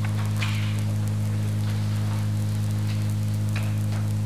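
Steady low electrical mains hum on the recording, with a faint hiss of room noise and a couple of soft rustles.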